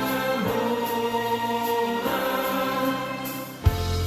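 Limburgish carnival song with a group of voices singing a held, slow melody over backing music. Near the end it drops away briefly, and then a sharp drum hit brings in a fuller, bass-heavy section.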